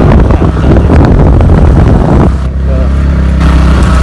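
Motorcycle running on the move, with heavy wind rush and buffeting on the microphone. A little past halfway the rush drops for about a second and a steady low engine hum comes through, then the rush returns.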